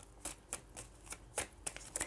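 A deck of Lenormand cards being shuffled by hand: a string of light, irregularly spaced card clicks.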